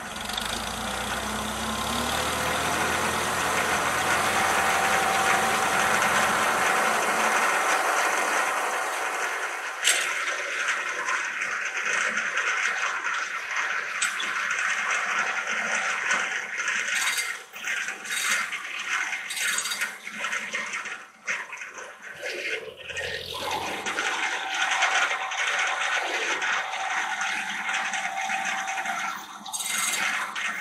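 52-inch, 32-tooth circular sawmill blade spinning free with a steady whirr and hiss, the drive rising in pitch over the first few seconds as it comes up to speed. From about ten seconds in, irregular metal clanks, rattles and a thump from the log carriage as the log is handled on the headblocks.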